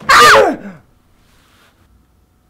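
A woman's short, loud cry that falls steeply in pitch and dies away within a second.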